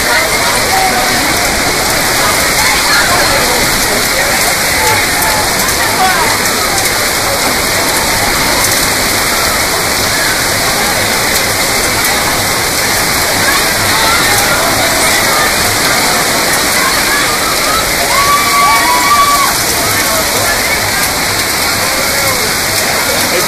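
Torrential thunderstorm rain and wind make a loud, steady rushing roar with no let-up. People's voices call out faintly beneath it.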